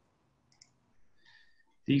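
A couple of faint computer mouse clicks in a pause, then a man starts speaking near the end.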